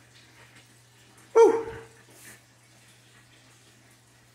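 Low steady hum with a faint watery trickle from an aquaponics grow-bed system running its pumps. About a second and a half in there is a single brief vocal sound whose pitch falls.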